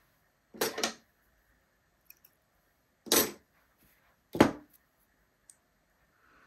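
Three brief rustles of hands handling sewing thread and a needle over fabric, with quiet in between.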